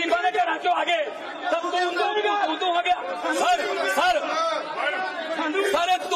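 Several men talking loudly over one another in Punjabi in a heated argument, too tangled to make out single words.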